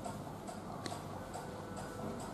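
Steady ticking, a little over two ticks a second, with one sharper click about a second in.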